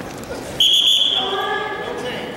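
A referee's whistle: one short, shrill blast starting suddenly about half a second in, a single steady high tone that fades out after about half a second.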